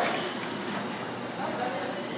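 Room noise with faint background voices and a few light clicks.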